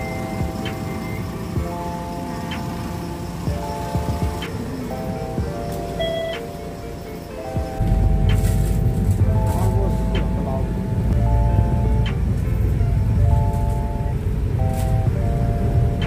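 Background music with a simple stepping melody of steady notes. From about halfway, the low rumble of a moving road vehicle runs underneath it.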